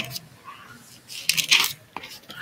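Sheets of paper being handled on a lectern: a short burst of crisp rustling and small clicks about a second and a half in.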